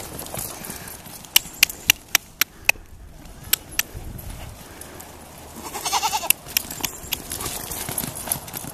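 A goat bleating once, briefly, about six seconds in. Before it comes a quick irregular run of sharp clicks and knocks.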